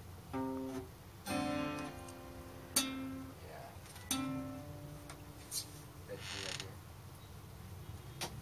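Acoustic guitar strummed as four separate chords about a second apart, each left to ring briefly, the third strum the sharpest and loudest. A short hiss follows about six seconds in.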